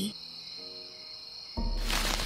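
Crickets chirping steadily as a night ambience, with a few soft sustained music notes in the middle. Near the end a sudden loud rushing swell sets in.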